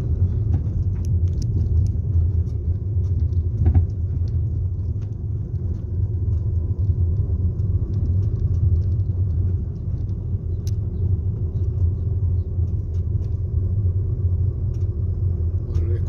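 Steady low rumble of a car driving slowly along a street, engine and tyre noise heard from inside the moving car, with a few faint clicks.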